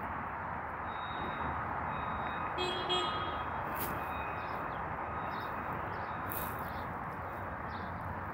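Steady outdoor city background noise, a distant traffic hum, with a brief faint beep about three seconds in.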